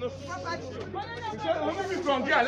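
Several people talking over one another in an excited exchange; the words are not clear.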